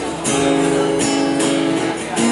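Acoustic guitar strumming sustained chords, with a fresh stroke roughly every half second.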